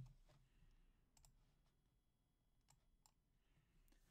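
A few faint, scattered computer keyboard clicks against near silence, with a brief low thump at the very start.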